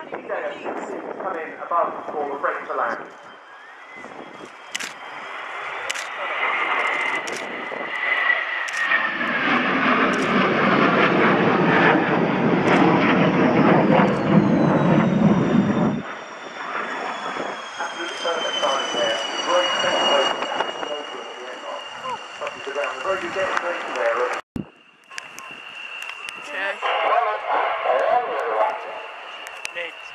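Fighter jet engines: a jet on an afterburner take-off run builds to a loud, deep roar through the middle that cuts off suddenly, followed by a high turbine whine sliding down in pitch. People's voices are heard underneath at the start and near the end.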